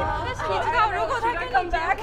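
A small group of people chatting over one another and laughing.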